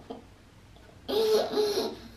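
A young girl laughing in one short, loud burst about a second in.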